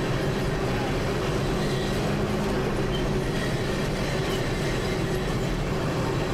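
Steady engine and road rumble inside a vehicle driving slowly over a rough stone-paved street.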